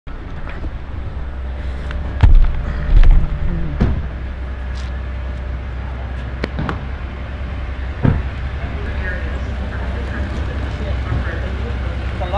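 Steady low rumble of an idling vehicle, with several thumps and knocks from a pickup truck's doors and luggage being handled. The loudest two come about two and three seconds in.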